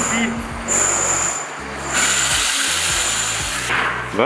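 Electric rotary hammer with a chisel bit running for about two seconds, starting suddenly about halfway in and cutting off shortly before the end, over background music with a steady beat.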